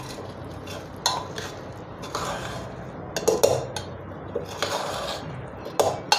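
Steel spoon stirring cooked rice pulao in a metal pressure cooker, with several irregular scrapes and clinks of spoon against the pot, the loudest in the second half.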